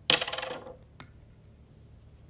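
A short rattling clatter of hard plastic as the pink toner bottle is handled, followed by a single sharp click about a second in.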